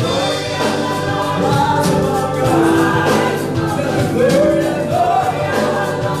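Live gospel praise singing: a male lead singer with a small group of backing singers, over keyboard and drums.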